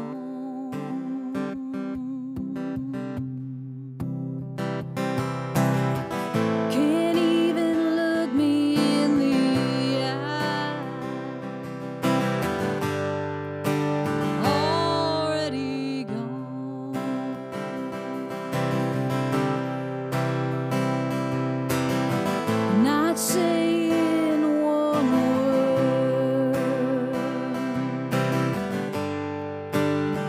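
A woman singing a song with long held and sliding notes, accompanying herself on a strummed acoustic guitar.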